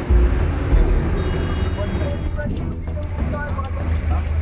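Roadside street noise: a steady low rumble of traffic and wind on the microphone, with indistinct voices of people in the background.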